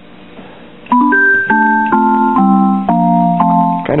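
A Kimball Voyager preset organ sounding its electronic piano voice through its own speaker: about a second in, a short run of about seven chords, each held briefly, the top notes mostly stepping down.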